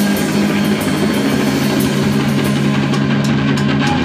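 Live rock band playing: electric guitars hold long low notes over a drum kit with washing cymbals, and a heavier section with louder low notes and drum hits kicks in at the very end.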